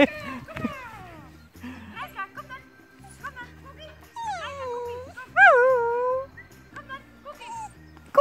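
Small terrier-type dog giving two drawn-out whining calls, each falling in pitch, about four and five and a half seconds in, the second longer. It sits looking up as if begging for a treat. Background music runs underneath.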